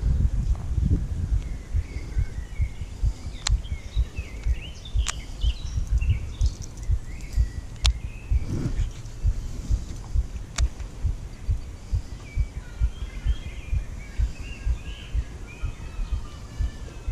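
Small birds chirping and singing off and on, over low, irregular thumping noise on the camera microphone. A few sharp clicks sound about three to four seconds apart.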